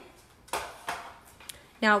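Three light knocks and clicks over about a second, from cauliflower florets and the plastic bowl of a food processor being handled as it is loaded; the first knock is the loudest.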